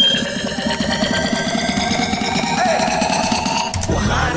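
Electronic music build-up: a synth sweep rising steadily in pitch over a fast buzzing pulse. It cuts off abruptly just before the end, as the track drops into its next section.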